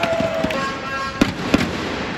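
Badminton rackets striking the shuttlecock: two sharp cracks about a third of a second apart, a little past halfway, as a rally gets going, over arena background noise.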